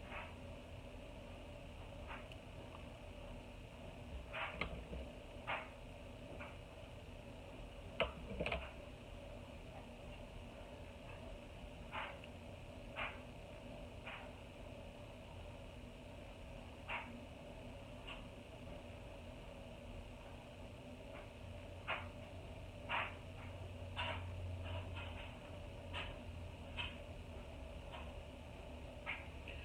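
Quiet room hum with scattered faint short clicks and ticks, a few dozen over the stretch, coming irregularly every second or several seconds.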